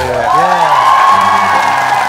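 A studio panel cheering and whooping "wow" together, with many voices overlapping, over background music.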